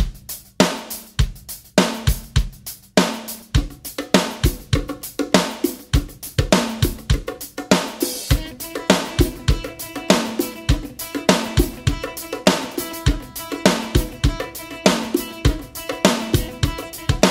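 Rock song intro carried by a full drum kit playing a steady groove: kick drum, snare, hi-hat and cymbal crashes. Held instrument notes build up underneath the drums from about halfway through.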